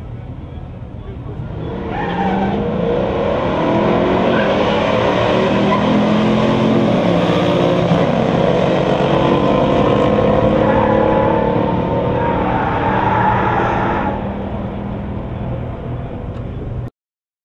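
Two V8 muscle cars, a 454 big-block Monte Carlo SS with an automatic and a Boss 302 Mustang with a four-speed, launching side by side on a drag strip and accelerating hard at full throttle. The engines get loud about two seconds in, climbing in pitch and stepping down at the gear changes, then fall away near the end as the cars pull far down the track.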